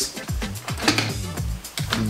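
Background music: low sustained bass notes with a few light percussive ticks.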